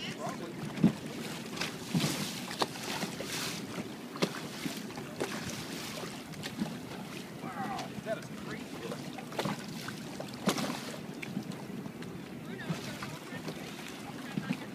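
Shallow sea water lapping and splashing in small irregular bursts, with wind on the microphone.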